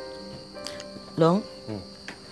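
Crickets chirping steadily as night-time background, with sustained music notes ending within the first half second and a brief loud voice sound, a short exclamation, a little over a second in.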